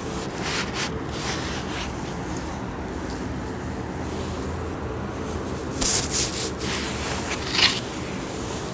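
Metal inclinometer probe being handled into the top of the borehole casing, giving several short scraping rubs over a steady background hiss. A louder cluster of scrapes comes about six seconds in and another sharp one near the end.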